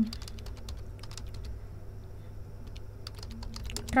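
Typing on a computer keyboard: an irregular run of quick key clicks, over a steady low hum. A brief voiced "hmm" comes at the very start.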